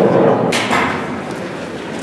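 Busy room noise in a large hall as people settle at a conference table, with one sharp knock about half a second in.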